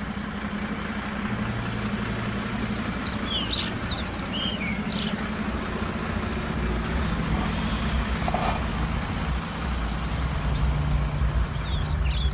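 Heavy truck engine idling: a steady low drone, with a short air-brake hiss about seven and a half seconds in. A few faint high chirps come around three to five seconds in.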